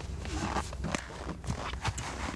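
Footsteps crunching on snow and sharp knocks of firewood logs being handled, a few strokes about half a second apart, over a steady low hum.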